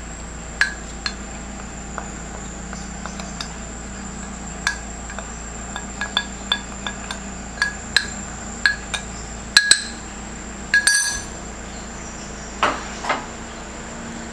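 Light clinks and taps on a glass mixing bowl as flour is tipped in from a cup: a dozen or so sharp, irregular ticks with a brief ring, the loudest few coming close together about ten seconds in.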